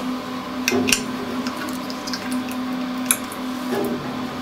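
A few light clicks of a small cover cap being handled and pressed onto the chrome bracket of a shower rail, over a steady low hum.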